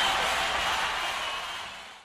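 A steady hiss-like background sound with faint steady tones, fading out gradually and cutting off to silence at the very end.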